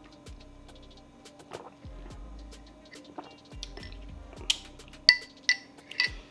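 Soft background music, with a few light clinks of a metal straw against a glass mug in the last second or two.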